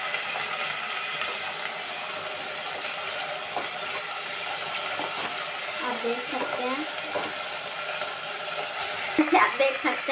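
Green peas and whole spices frying in hot oil in a pot, stirred with a wooden spatula: a steady sizzling hiss with the odd knock of the spatula against the pot.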